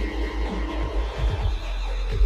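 Electronic outro music with a pulsing deep bass and a few short downward pitch sweeps.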